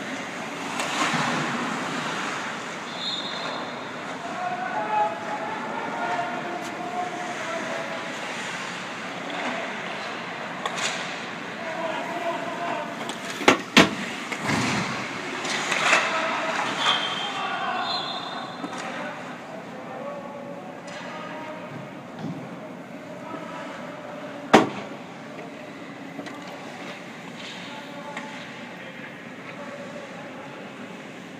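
Ice hockey practice: skate blades scraping and carving the ice, with sharp cracks of sticks striking pucks, the loudest a pair close together about halfway through and another about three-quarters of the way through, and indistinct calls from players.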